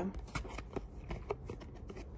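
Tarot cards being shuffled and handled by hand: a quick, irregular run of small soft card clicks.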